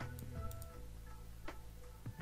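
Faint background music with held notes, with a few sharp computer mouse clicks.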